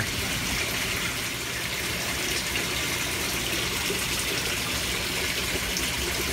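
Aquaponics system water running into the tank: a steady, unbroken rush of flowing water.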